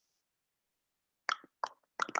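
Near silence for over a second, then a few short, clipped syllables of a man's voice starting about a second and a quarter in.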